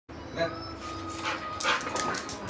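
A dog barking, loudest about half a second in and again near the end.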